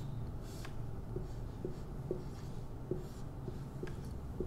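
Marker pen writing on a whiteboard as a skeletal chemical formula is drawn: a few short strokes with small ticks as each line is put down.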